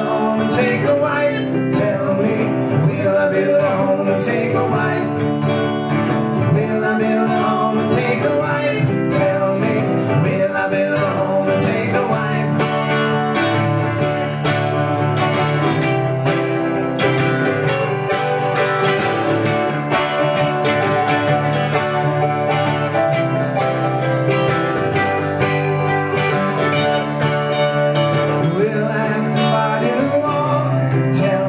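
A live band playing a song, led by guitar, with a steady strummed rhythm.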